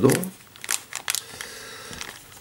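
Clear plastic bag crinkling as it is handled, in a few short rustles within the first second or so, then fading to a faint hiss.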